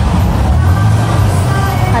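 Low, steady rumble of a motor vehicle's engine from the street.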